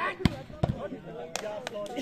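A volleyball struck hard with a sharp smack about a quarter second in, then a few lighter thuds of the ball over the next second and a half, with players shouting.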